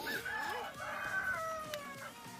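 A rooster crowing once: one long call that holds its pitch and then falls slightly toward the end.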